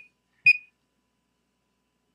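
A Prova 123 thermocouple calibrator's keypad gives one short, high beep about half a second in, with a faint click of the key, as the 300-degree setting is entered.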